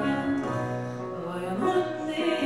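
Live band music with long held notes from keyboard and violin, and a sung phrase with gliding pitch coming in about a second and a half in.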